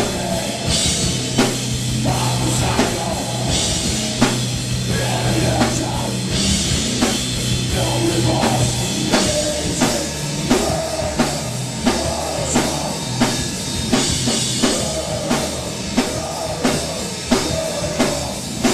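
A rock band playing live: distorted electric guitars over a drum kit, with cymbal washes in the first half and a steady, even drum beat in the second half.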